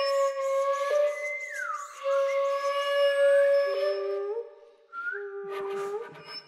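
Contemporary chamber music for soprano, mezzo-soprano, flute and violin: overlapping sustained hummed, sung and flute tones, with a downward glide in pitch about one and a half seconds in. The texture thins and briefly drops out near the end before low held notes resume.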